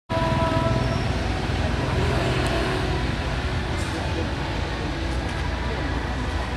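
Steady street noise of traffic with people's voices mixed in, and a low rumble throughout. A few brief steady tones sound in the first second.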